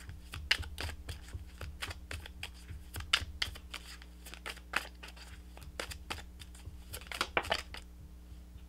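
A tarot deck being shuffled by hand: a quick, irregular run of light card flicks and taps, with a louder flurry near the end as a card jumps out of the deck onto the table.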